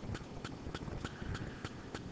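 A stylus tapping and clicking on a pen tablet while numbers are handwritten: a quick, irregular run of light clicks.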